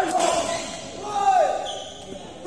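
A sharp crack of a badminton racket smashing the shuttlecock, followed at once by voices shouting in an echoing hall; the loudest shout, falling in pitch, comes just over a second in.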